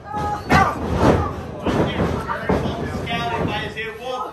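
A series of loud, heavy thumps or slams, irregularly spaced, the hardest about half a second and a second in, mixed with raised voices.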